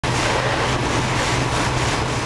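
Fire hose water stream spraying and splashing against a burning brick wall, a steady loud rush of water, with a steady low engine hum underneath.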